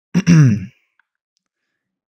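A man's short voiced sigh, about half a second long, falling in pitch.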